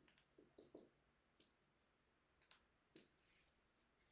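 Dry-erase marker writing on a whiteboard: faint short squeaks and taps as each stroke is made. They come in a quick cluster in the first second and again around two and a half to three and a half seconds in.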